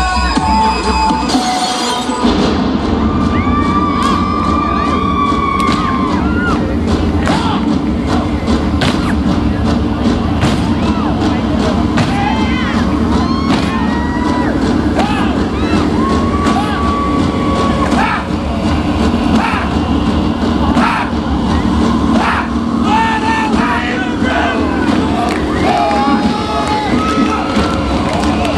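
Loud music breaks off about two seconds in and gives way to an audience cheering. Many voices shout, whoop and hold high screams over a dense crowd din, with scattered claps.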